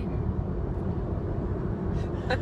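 Steady low road and engine noise inside the cabin of a moving car.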